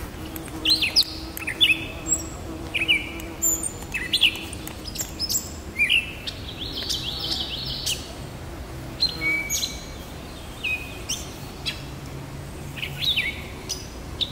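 Gray catbird singing: a halting string of short, varied notes that sweep up and down, delivered in quick phrases with brief gaps, pausing for a couple of seconds near the end before starting again.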